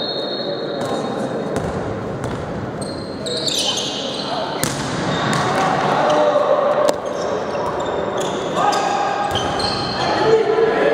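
Handball bouncing and being thrown on the hard court floor of a large sports hall, several sharp impacts echoing, over players' shouts and calls.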